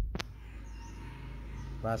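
A single sharp click about a fifth of a second in, followed by a steady low hum until a voice comes in near the end.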